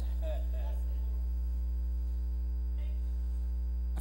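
Steady electrical mains hum in the church's sound system, a low unchanging buzz with a faint voice briefly about half a second in.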